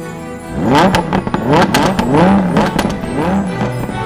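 A sports car engine revving hard several times in quick succession, its pitch climbing on each rev, laid over music.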